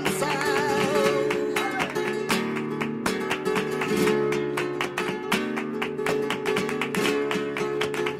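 Flamenco guitar interlude of fast strummed chords, with the male flamenco singer's last sung line trailing off in the first second or two.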